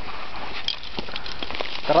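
Shovel digging into packed snow: a few short crunching, scraping strokes over a steady noisy background.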